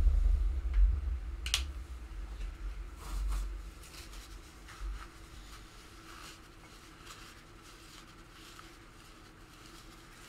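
Light handling noises on a desk: low bumps and a few small clicks in the first few seconds, then quiet room tone.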